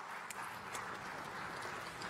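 Light audience applause in a large hall, a few scattered claps that thicken into a steady patter of clapping.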